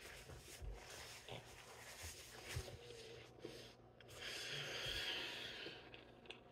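Quiet chewing of a mouthful of cheeseburger, with small soft mouth clicks, and a breath out of about a second starting about four seconds in.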